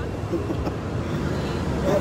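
Steady city street traffic noise, a low rumble of road vehicles.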